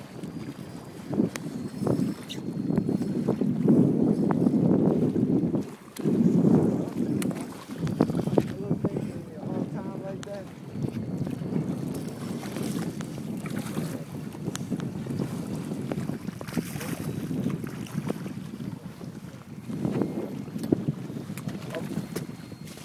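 Wind gusting on the microphone in uneven rumbles, loudest from about two to seven seconds in, over choppy water beside a small boat.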